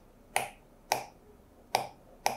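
Three sharp clicks of metal tweezers tapped against a circuit board, irregularly spaced about half a second to a second apart. They serve as marks for lining up the audio with the video.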